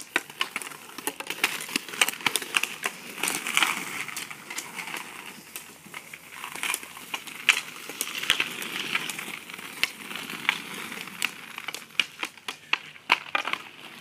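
Hockey stick blade tapping and scraping an orange street hockey ball on asphalt: quick, irregular clicks and knocks, several a second, over a rough scraping sound as the ball is stickhandled back and forth.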